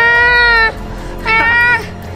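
Two drawn-out, meow-like cries, the first about a second long and the second about half as long, over steady background music.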